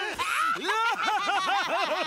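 A cartoon character's goofy, exaggerated laugh: a quick run of high, sing-song 'ha' pulses, about four or five a second, picking up after a brief break near the start.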